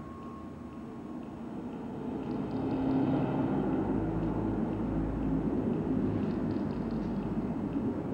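Passenger train running past on the track. Its rumble builds about two seconds in and then holds steady.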